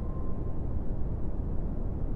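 Steady low rumble of a subway train, used as an intro sound effect, with a single chime tone dying away in the first half second.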